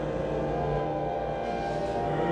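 Slow ensemble music of several sustained held notes over a steady low drone, with no beat.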